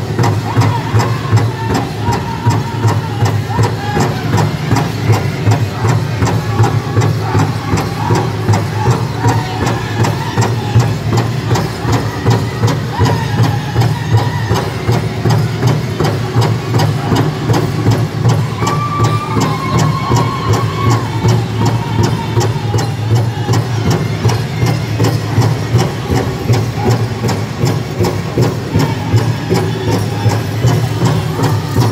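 Powwow drum group: several singers beating one big drum together in a steady, even beat, with the group's voices singing over it.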